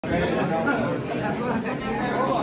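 Several people chatting at once, their voices overlapping in a general conversational babble.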